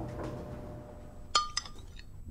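Two quick, ringing clinks of metal utensils against a ceramic bowl, about a quarter second apart, near the end.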